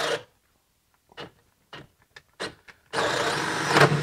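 DeWalt 12-volt cordless drill on speed two boring a one-inch self-feeding spade bit into wood: it runs, cuts off about a quarter second in as the drill stops in the cut, gives a few brief blips, then runs again under load from about three seconds in, rising in pitch near the end.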